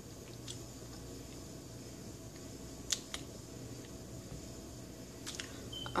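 Faint mouth sounds of a person sipping a drink through a straw and swallowing: a few soft clicks, the sharpest about halfway through, over a steady low room hum.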